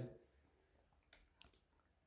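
Near silence, with a few faint clicks of computer input near the middle.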